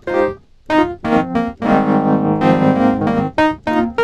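Sampled Wurlitzer 200A electric piano playing short chord stabs, with one chord held for about a second and a half in the middle. Its dirty setting gives a fuzzy tone: the speaker buzzes from being cranked all the way up, and tube-amp saturation is added.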